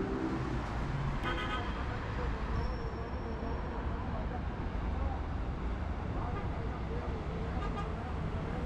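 Busy city road traffic heard from above, a steady rumble of cars, minibuses and buses passing, with a short vehicle horn toot about a second in.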